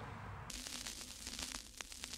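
Faint static-like hiss with scattered small crackles, starting suddenly about half a second in after a moment of quiet room tone.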